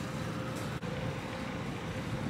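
Steady outdoor ambience of a store parking lot: a low hum of distant traffic and background noise, with a brief drop in level just under a second in.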